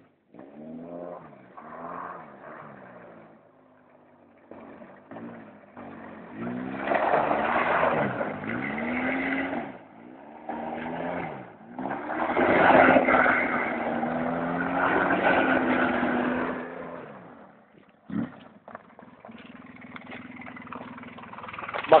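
A motor vehicle's engine revving, its pitch rising and falling, loudest in two long stretches in the middle.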